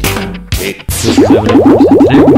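Cartoon-style logo sting from a TV show's animated bumper. A quick whoosh and a hit are followed by a fast run of rising 'boing'-like zips, about ten a second, over a steady low tone.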